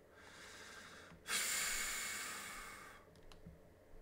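A man breathes in softly, then lets out a long breath close to the microphone, loudest at its start and fading over about two seconds. A couple of faint clicks follow.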